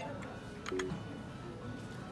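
Seven Bank ATM keypad being pressed: a few separate key presses, each a short click with a brief electronic beep, over background music.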